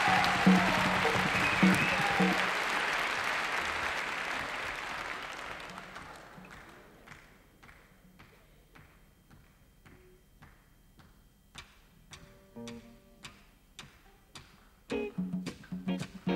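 Audience applause over a repeating low bass note fades away over the first several seconds. Then sharp hand claps count a steady tempo, about three a second, with a few brief instrument notes. Near the end the afrobeat band comes in with a loud, rhythmic groove.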